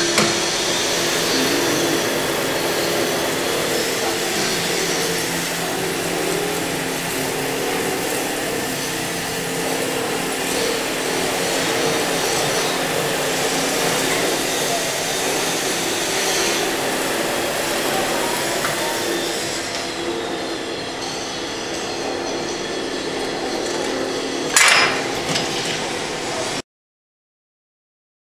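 Fully automatic two-bobbin winding machine running: a steady mechanical whir and hum with a few light clicks. A single sharp clack comes about a second before the end.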